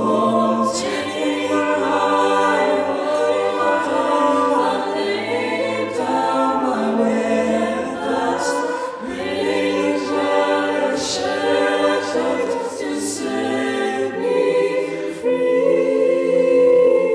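Five-voice a cappella group (soprano, alto, tenor, baritone, bass) singing a slow ballad live through handheld microphones: sustained close-harmony chords over a low sung bass line, with no instruments.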